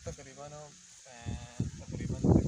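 Two short bleats from a farm animal, the first arching in pitch and the second held steady, followed by soft low thuds near the end.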